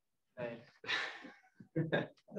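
A person sighing, with a short vocal sound before it and a few brief, unclear vocal sounds after it.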